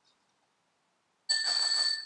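About a second in, a spoon knocks against a small ceramic bowl and it rings with a clear bell-like tone for under a second.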